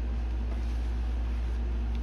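Steady low background hum with a faint steady higher tone, unchanging throughout.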